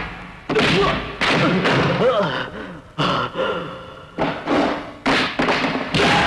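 Film fight sound effects: a rapid string of about eight hard punch and body-blow hits, each sudden and fading quickly, mixed with the fighters' grunts and shouts.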